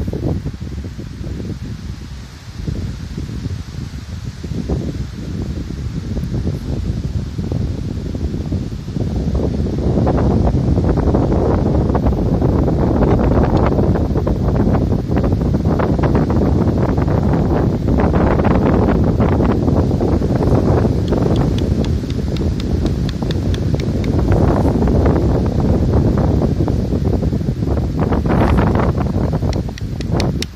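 Wind buffeting the microphone, growing heavier about a third of the way in, with rustling.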